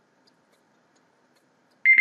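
Near silence, then near the end a loud electronic timer alarm starts beeping with a steady high tone: the 30-second countdown has run out.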